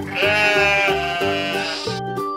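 Sheep bleating: one long, wavering bleat lasting most of two seconds, over background music.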